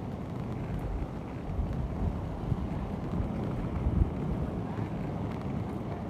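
Low rumble of wind buffeting a phone microphone while roller skating along a paved path, mixed with the rolling of the skate wheels, with a couple of louder gusts or bumps in the middle.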